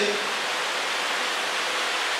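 A steady, even hiss of background noise with no other sound, in a gap between spoken phrases.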